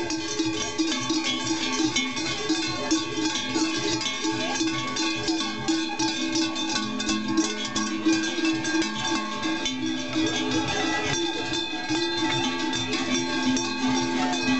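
Large cowbells worn on belts by masked Tschäggättä figures, clanging continuously and unevenly as they walk and stomp, several bells of different pitches ringing together.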